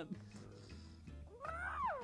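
A single animal-like call, rising then falling in pitch, about a second and a half in, after a quiet stretch.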